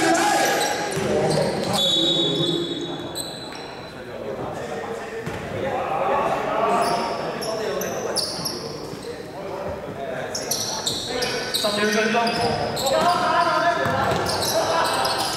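Indoor basketball game: players' voices calling out across the court, a basketball bouncing, and short high squeaks, all echoing in a large gym.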